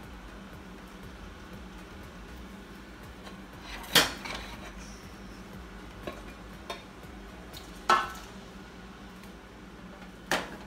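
Metal cookware clanking against a stainless steel stockpot as ingredients are tipped in: two sharp clanks about four seconds apart, each ringing briefly, with a few light ticks between them.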